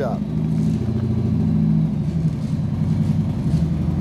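An engine running steadily at idle nearby, a loud low hum whose pitch shifts slightly about two seconds in.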